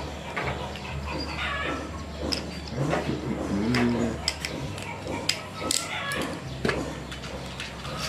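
Scattered small plastic clicks as a Beyblade launcher is handled and worked in the hands. A brief animal call sounds in the background about halfway through.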